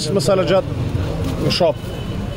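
Street noise: people talking over the steady running of a motor vehicle engine.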